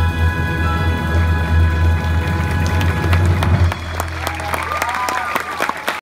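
Pit orchestra holding a final chord over a timpani roll that stops about three and a half seconds in. Audience applause builds beneath it and carries on after the music ends, with cheers rising near the end.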